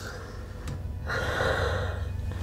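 A woman's sobbing gasp, a breathy intake that starts about a second in and lasts most of a second, taken through an oxygen mask held to her face, over a low steady hum.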